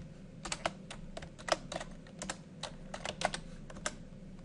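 Typing on a computer keyboard: a run of unevenly spaced keystroke clicks, about four a second.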